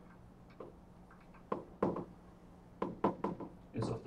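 Chalk writing on a blackboard: a string of short, irregular taps and clicks as the strokes and dots are made.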